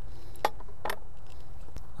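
Steady low outdoor background rumble with two faint clicks, about half a second and about a second in.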